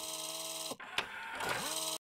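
Synthesized news-broadcast transition sting: a chord with a bright hissing whoosh starts abruptly and slides down in pitch about three-quarters of a second in, a click follows at about one second, then a second chord sweeps upward, holds and cuts off sharply.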